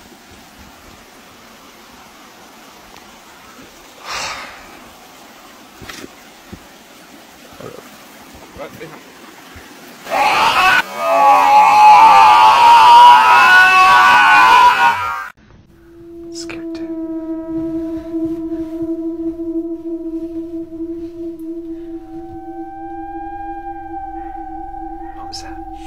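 Faint rustling on a night walk in the woods, with a single knock about four seconds in. About ten seconds in comes loud screaming, lasting some five seconds and cutting off suddenly. Then an eerie drone of several steady, held tones, with another tone joining near the end.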